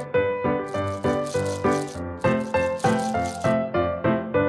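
Candy-coated chocolates rattling and clattering as a hand stirs and digs through a heap of them, over background music with light piano-like notes; the rattling stops shortly before the end.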